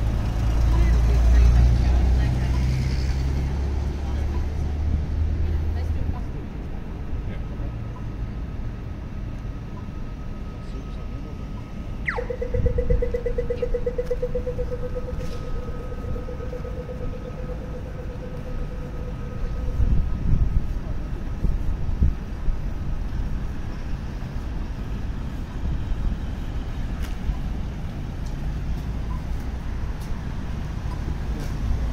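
City street traffic, with a vehicle passing close and loud in the first few seconds. About twelve seconds in, an Australian audio-tactile pedestrian crossing signal gives a quick falling electronic 'zap' followed by rapid ticking for about eight seconds, signalling walk.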